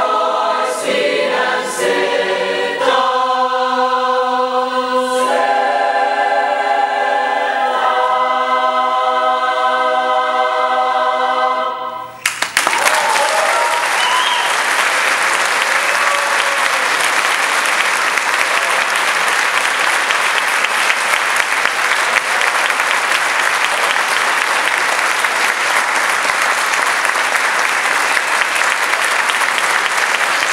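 Mixed high school choir singing the closing chords of a gospel arrangement, ending on a long held chord that cuts off sharply about twelve seconds in. Audience applause follows at once and carries on steadily.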